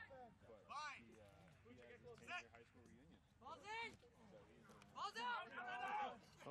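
Short calls and shouts from several voices across an open field, with no words made out. There are four or so brief bursts, and the loudest comes near the end.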